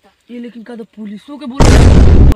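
A boy talking, then near the end a sudden, very loud burst of harsh noise that cuts in abruptly and drowns everything out.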